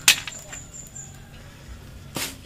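A single sharp click just after the start, followed by a few faint ticks, as a freshly cut ficus branch is handled.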